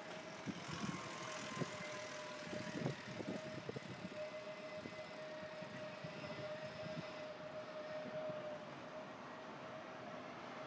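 Urban street background: a steady motor hum holding one pitch throughout, with a few short knocks in the first few seconds.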